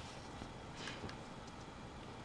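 A brief, faint rustle of hanshi calligraphy paper being slid across the desk, a little under a second in, over quiet room hiss.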